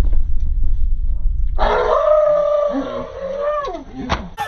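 Low rumbling noise, then about a second and a half in a young man lets out one long, loud yell held for about two seconds: a shriek of shock at finding roaches in his food.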